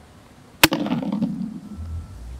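A metal food tin hits the concrete paving slabs with a sharp clank about half a second in, then rolls along the slabs with a rough rumble for about a second.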